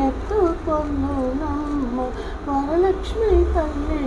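A woman's solo voice singing a Telugu devotional melody, with held notes and ornamented glides, over a low steady hum.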